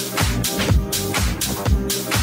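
House music DJ mix playing: a steady four-on-the-floor kick drum at about two beats a second under synth and bass parts.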